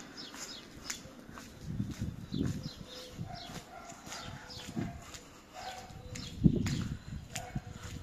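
Birds chirping outdoors: many short, high calls that fall in pitch, repeated through the whole stretch. Under them come soft thumps of footsteps on asphalt, with one louder thump about six and a half seconds in.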